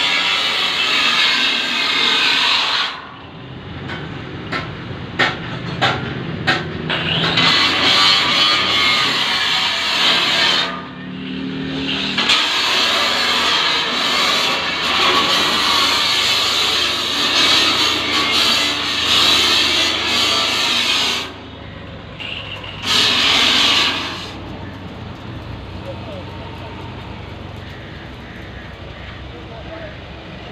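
Loud hissing, grinding noise from workshop tools, starting and stopping several times, with a run of sharp knocks a few seconds in. A quieter, steady low hum carries on after it.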